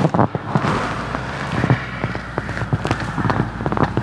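Cabin of a 2000 Corvette C5 convertible moving off with the top up: a low, steady engine and road rumble with many small irregular clicks and crackles over it.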